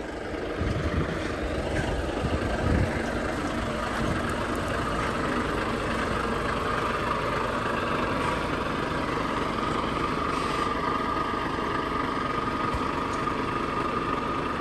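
Diesel engine of a Volvo FH semi-truck running as the tractor-trailer moves slowly close by. The sound grows over the first second and then holds steady, with a steady whine joining from about halfway.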